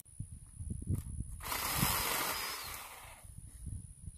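Rustling of brush and leaves, with irregular low thuds and rumbling. About a second and a half in, a louder hiss of rustling swells up suddenly and fades after almost two seconds.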